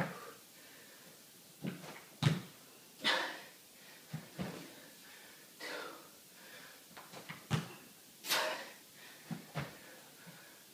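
A man breathing hard while he recovers between squat thrusts: heavy, noisy exhalations about every two and a half seconds. A few short thumps come in between.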